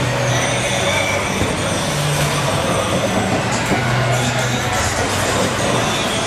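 Bowling alley ambience: a steady rumble of bowling balls rolling along the lanes.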